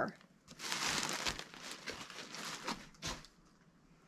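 Plastic zip-top bag crinkling as it is handled, for about two seconds, followed by a soft knock.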